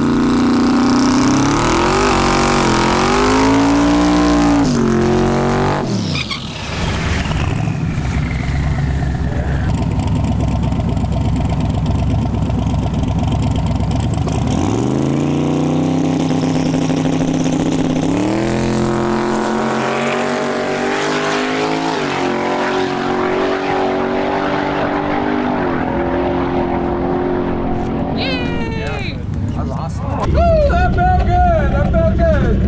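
Twin-turbo LS V8 Camaro drag car revving up and down at the starting line, then launching and pulling hard down the track. The engine pitch climbs and drops back at each gearshift.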